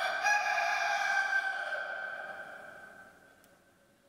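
A rooster crowing once: a single long crow that starts suddenly, then rings on in the church's echo and fades away over about three seconds.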